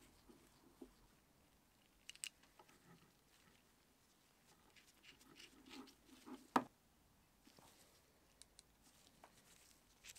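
Faint clicks and taps of small steel gears being handled and fitted onto the studs of a lathe's gear arm, with one sharp metallic click about six and a half seconds in.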